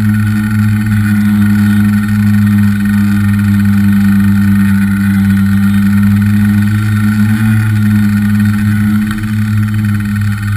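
Tricopter's electric motors and propellers in flight, heard from a camera on its own frame: a loud, steady drone with a strong low hum, easing slightly about nine seconds in.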